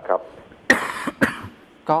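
A man coughing twice, two short harsh coughs about half a second apart, between spoken words.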